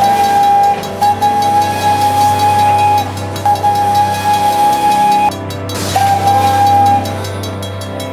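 Steam locomotive whistle blowing one steady note in several blasts, the first ones long and the last a shorter blast about a second long, over background music.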